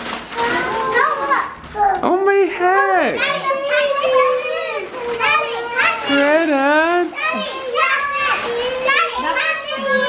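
Young children's high-pitched voices, talking and calling out without a break, pitch swooping up and down, with no clear words.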